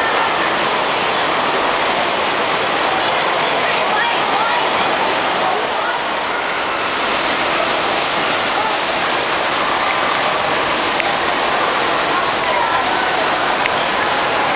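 Steady rush of water pouring down water slides and a white-water chute, with indistinct voices in the background.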